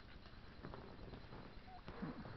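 Faint clicks and rattles of plastic Lego pieces being handled as the model is shifted between modes, over low room hum.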